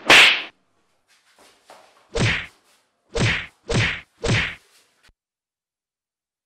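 Slapping blows to a person: one sharp slap, then after a pause four more hits, the last three in quick succession about half a second apart.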